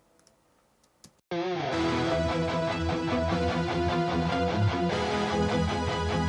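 About a second of silence, then playback of an 80s-style rock arrangement starts: a synthesizer pad and an auto-arpeggiated synth line with an electric rhythm guitar layered on top.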